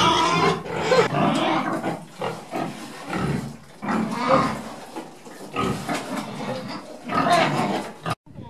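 Four young pigs in a pen grunting and feeding at the trough in irregular bursts.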